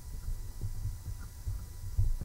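Low rumble with soft, irregular thumps and a faint steady hum, with a louder thump at the very end.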